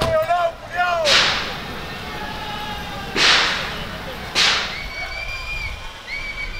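Three sharp cracks, each ending in a short hiss, heard about a second in, about three seconds in and about four and a half seconds in. A voice is heard briefly at the start, and a steady high tone is held for about a second near the end.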